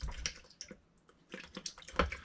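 A scatter of light, irregular clicks and taps, handling noise from small objects being moved about at the workbench, with a sharper knock near the end.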